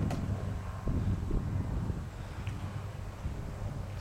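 Low, steady rumble of wind on the microphone, with no distinct events.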